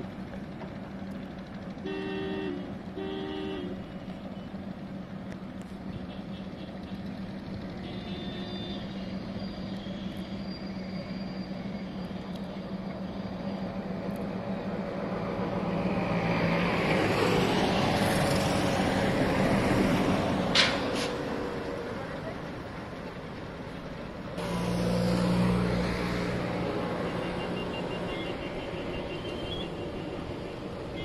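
Road traffic on a bridge, with vehicles passing close by twice in the second half. Two short horn toots sound about two and three seconds in, over a steady low engine hum.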